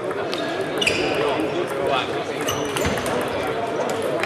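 Table tennis ball clicking sharply off bats and table in a rally, a run of clicks over the first three seconds, over a steady babble of voices in the hall.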